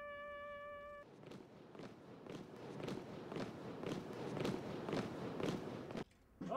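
A held trumpet note ends about a second in, followed by the steady footfalls of a marching column of sailors on a paved road, growing louder as they approach.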